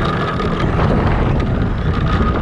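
Radio-controlled car driving fast along asphalt, heard from a camera mounted on its body: a steady thin whine over heavy rumble and wind noise on the microphone.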